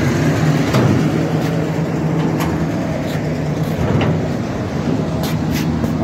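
A steady low hum with scattered short clicks and knocks, the clicks coming more often near the end.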